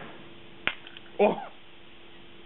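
A single sharp snap, about two-thirds of a second in, as a charged capacitor bank discharges through its wire leads into the pins of an old AMD CPU; the spark spot-welds the lead to the pins.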